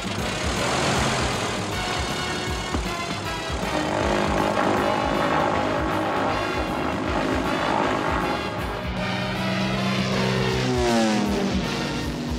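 Cartoon sound effect of a biplane's propeller engine running as the plane takes off and climbs, mixed with background music.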